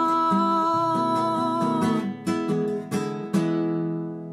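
Acoustic guitar playing the closing strums of a Colombian bambuco, under a woman's voice holding the last sung note for about the first two seconds. A final chord is struck a little after three seconds in and left ringing.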